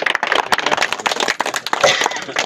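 A group of people clapping: a short, dense burst of applause.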